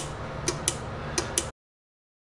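Sharp little clicks in pairs about a fifth of a second apart, over a low steady room hum, cut off suddenly about a second and a half in.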